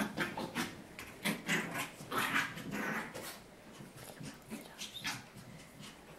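A Maltese puppy making a string of short, uneven little sounds as it plays with and pushes a toy ball, busiest about two to three seconds in.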